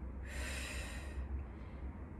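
A woman's forceful exhale, about a second long, breathing with the effort of a kettlebell single-leg deadlift, over a low steady hum.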